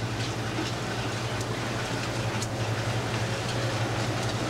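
Steady low hum under an even rushing noise, with a few faint light clicks.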